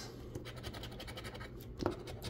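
A scratch-off lottery ticket's coating being rubbed off with a coin-shaped scratcher: a quiet run of many quick scratching strokes.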